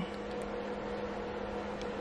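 Room tone with a steady low hum.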